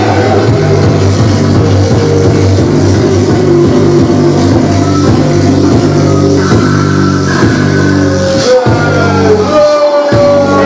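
Loud live noise-rap music: a heavy, distorted beat with a bass line pulsing in repeated low notes, and the low end briefly dropping out just before the end.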